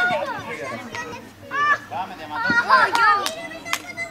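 Young children's voices shouting and calling out over one another, high-pitched, with a few sharp knocks in between.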